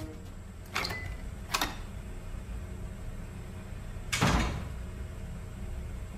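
Wooden interior door with glass panels being opened and shut: two short clicks of the handle and latch about a second in, then a heavier knock as the door closes about four seconds in.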